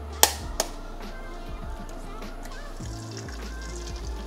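Two sharp taps of a metal spoon cracking an eggshell, about a third of a second apart near the start, the first the louder, over steady background music.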